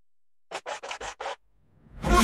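Break in a bhangra–hip-hop track: about half a second of silence, then a quick run of five short record-scratch strokes, with the music starting to swell back in right at the end.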